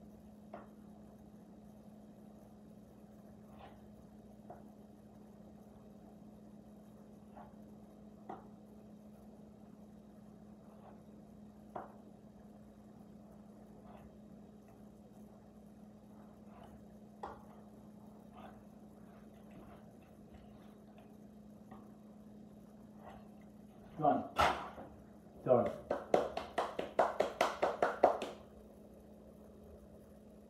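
Faint scattered clicks and taps of a rolling pastry wheel cutting pie dough into strips on a plastic cutting board, over a steady low hum. Near the end comes a loud voice-like burst of a few seconds that pulses rapidly.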